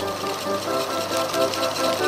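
Background music with held notes, over the mechanical running noise of an Arkwright water frame spinning cotton yarn, its spindles turning and winding it onto bobbins.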